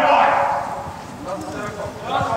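Footballers shouting during play, the loudest shout trailing off in the first half second, then quieter distant voices and a few light knocks.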